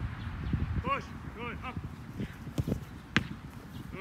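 A soccer ball kicked hard on grass, one sharp thud about three seconds in, with a few lighter knocks before it. Short, high-pitched voices call out in the distance about a second in.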